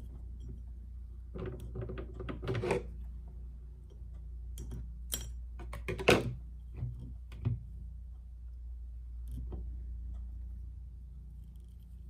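Handling sounds of tying jute twine around a glass mason jar with a metal pump lid: soft rustling with scattered light clicks and knocks, the sharpest about six seconds in, over a low steady hum.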